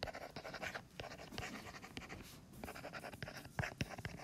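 A stylus tapping and scratching on a tablet screen as words are handwritten: an irregular run of short, faint strokes.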